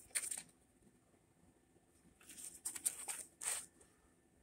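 Crinkling and rustling of plastic bubble wrap and tool pieces being handled in a foam-lined tool case, in short bursts just after the start and again from about two to three and a half seconds in.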